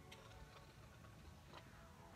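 Near silence, a break in the background music, with a few faint clicks.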